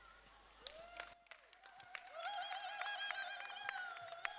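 Scattered hand claps with one long, high held note over them, beginning about a second in.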